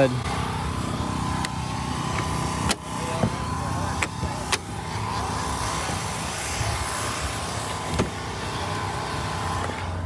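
A car engine idling steadily, with a few sharp clicks and knocks spread through, the hood being unlatched and raised.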